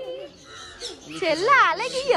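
Bird calls, the loudest one coming in the second half.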